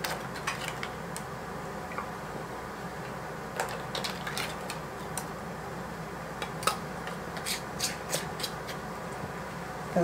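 Scattered light metallic clicks and clinks of canning lids and screw rings being picked out of a pot of hot water and set on filled jam jars, coming more often near the end, over a steady low hum.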